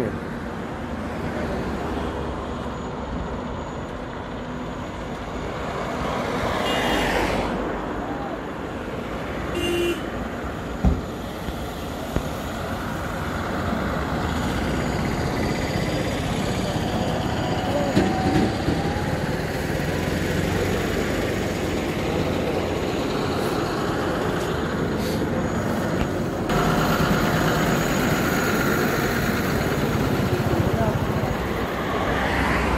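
Roadside traffic noise: vehicles passing and engines running, with voices of bystanders in the background and a short horn toot.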